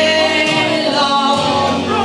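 Two women singing a duet into microphones over a karaoke backing track.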